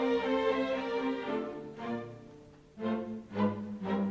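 Opera orchestra's strings playing an instrumental passage: a held chord that fades away after about a second, then short, separate chords from about three seconds in.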